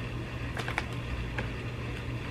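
Steady low room hum with a few faint, soft clicks scattered through it: mouth sounds of someone chewing a soft candy.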